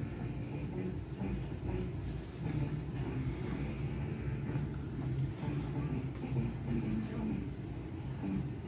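A low, steady rumble of background noise with no distinct sounds standing out.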